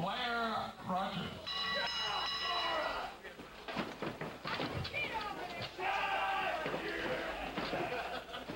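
Spectators' voices shouting and calling out over one another. About one and a half seconds in comes one long, high-pitched held cry.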